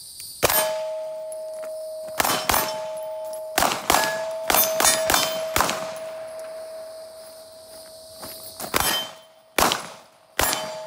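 A string of about ten Beretta pistol shots fired on the move in quick pairs and clusters, with the hits on hanging steel plates ringing in a clear, steady tone that lingers for seconds and slowly fades between shots.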